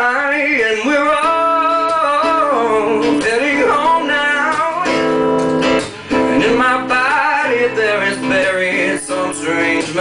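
Male voice singing long, wavering held notes over a strummed guitar in a live performance of a slow pop song, with a brief break in the voice about six seconds in.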